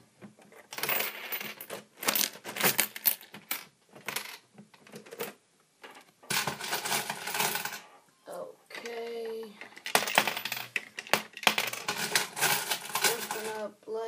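Coins clinking and clattering against each other and the plastic bricks of a homemade Lego coin pusher, in three bursts of rapid metallic clicks.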